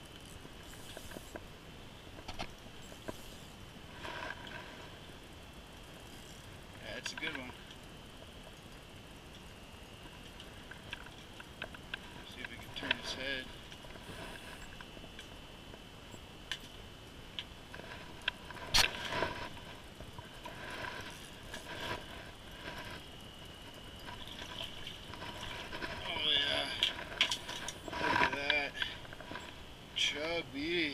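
Scattered clicks and knocks of gear and fish handling as a lake trout is brought up through an ice hole and lifted out, with a few short vocal exclamations that are loudest near the end. A faint steady high tone runs underneath.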